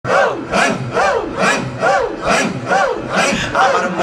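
Loud rhythmic Islamic zikir chanting amplified over a PA: a man's voice, with the crowd, repeating a short breath-driven call about twice a second, each call rising and then falling in pitch.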